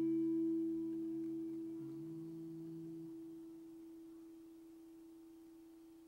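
Acoustic guitar chord left ringing after a strum and slowly dying away, one note sustaining clearly after the others have faded.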